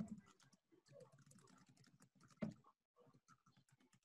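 Faint computer keyboard typing and clicking, with one louder click about two and a half seconds in.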